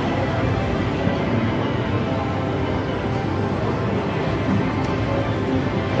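Reelin N Boppin video slot machine playing its steady free-games music while the reels spin.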